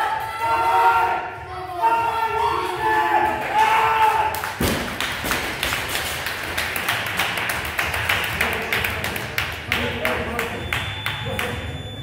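People shouting encouragement during a heavy front squat. About four and a half seconds in, the loaded barbell is dropped onto the rubber gym floor with one heavy thud, followed by several seconds of applause and cheering.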